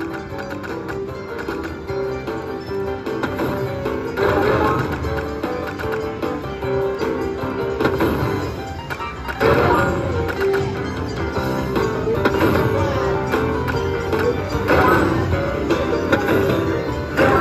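Slot machine hold-and-spin bonus music, a looping melody, with brighter jingles about four seconds in, near ten seconds, and twice near the end as more coin symbols lock onto the reels.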